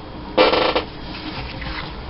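A glue stick rubbed over paper: one short, loud buzzy squeak about half a second in, then quieter rubbing.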